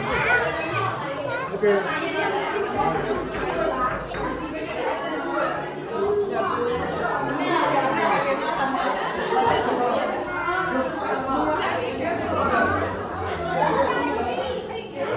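Chatter of a group of children and adults talking over one another, with no single voice standing out.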